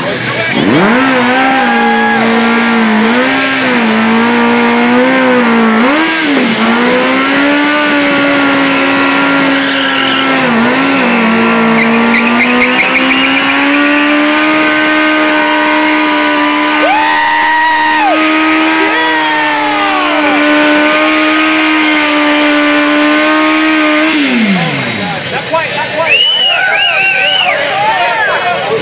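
Motorcycle engine held at high revs during a stationary burnout, the rear tyre spinning against the pavement. The revs hold steady with small wavers for over twenty seconds, then drop away sharply near the end.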